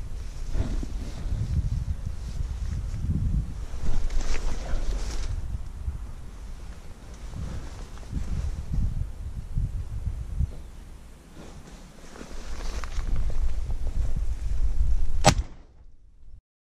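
Irregular low rumbling and buffeting from wind and handling on a camera microphone, with one sharp crack near the end.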